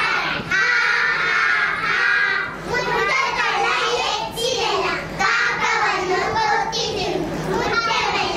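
A group of young children's voices together, singing and calling out loudly and without pause during a nursery action song.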